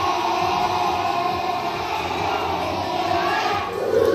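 A class of young children singing a song together in unison, loud and continuous, with a louder swell at the very end.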